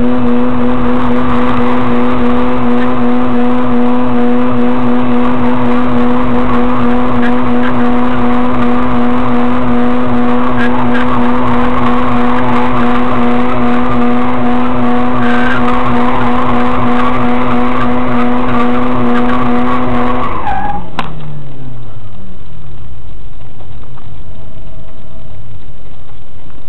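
Mazda RX-8's two-rotor rotary engine held at steady high revs through a drift, heard from inside the cabin, with tyre squeal over it. About twenty seconds in, the revs fall away over a couple of seconds and the engine settles towards idle.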